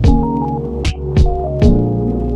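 Background music: held melodic notes over a steady low bass, with sharp drum hits falling about three times in the two seconds.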